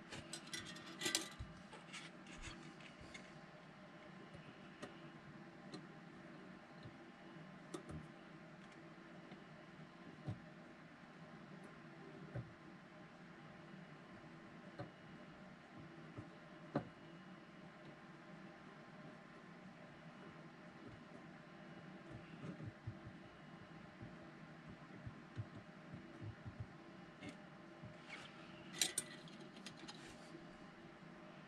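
Faint small clicks and taps of a soldering iron, wire and capacitor being handled at a workbench, over a quiet steady hum. A cluster of sharper clicks comes about a second in and again near the end.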